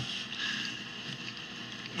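Low steady hiss of room tone picked up by a podium microphone, with no distinct event in it.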